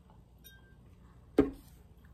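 Faint clink of a stemmed wine glass with a brief thin ring, about half a second in.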